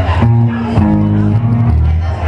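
Live rock band playing: bass guitar holding low notes that change about every half second to second, under guitar.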